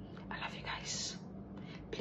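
A woman whispering: two soft, breathy hisses without voice, about half a second and one second in, over quiet room noise.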